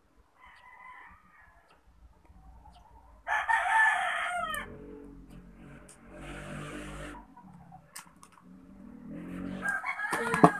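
A rooster crowing: one loud crow a little over three seconds in, ending with a falling pitch, with fainter pitched calls around it.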